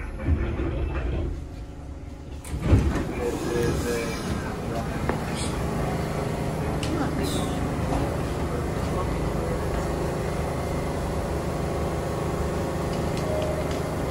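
R46 subway car doors opening with a loud bang a little under three seconds in, then the steady hum of the stopped train and the bustle of passengers stepping off onto the platform.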